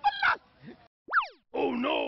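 Comedy sound effect added in editing: a quick whistle-like glide up and then down in pitch, followed by a man exclaiming "oh no".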